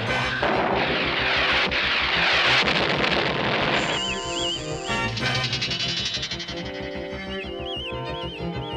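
Cartoon sound effect of a cannon firing a signal shot: a blast followed by a loud rushing whoosh lasting about three and a half seconds, over music. After that a wavering high electronic tone comes in twice as the signal shows.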